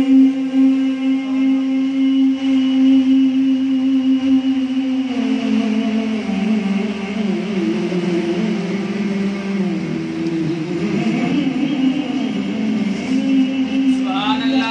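A young man's voice singing a naat into a microphone: one long held note for about five seconds, then sliding down to a lower pitch and wavering through ornamented turns.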